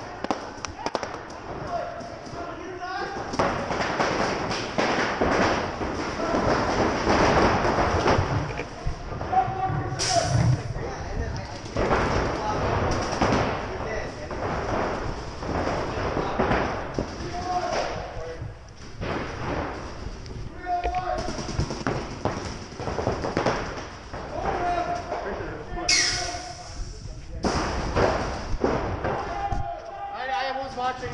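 Paintball scrimmage: indistinct shouting from players across the field, mixed with thuds and pops of impacts and marker fire. Two sharp bursts stand out, one about ten seconds in and another around twenty-six seconds.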